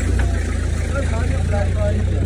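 A car engine idling, a steady low-pitched sound, with faint voices of people talking over it.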